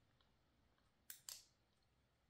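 Near silence: room tone, with two faint short clicks a little after a second in.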